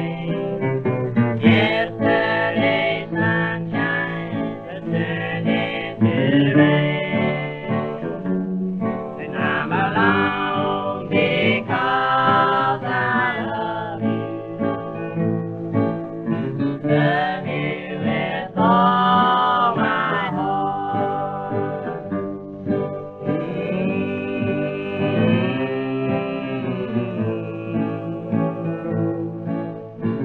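1934 old-time country record of two acoustic guitars strumming under a singing voice, with a muffled tone that has no treble above about 4 kHz, like an old 78 rpm disc.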